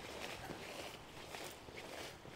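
Faint footsteps and rustling as someone walks through a leafy crop of forage rape, under a low haze of outdoor noise.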